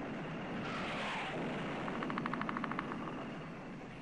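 Battle soundtrack: a steady low rumble with a rapid burst of distant machine-gun fire, about a second long, in the second half, and a brief rushing noise about a second in.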